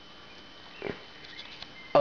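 Quiet room tone with one short, snort-like breath from a person a little under a second in; a word of speech begins at the very end.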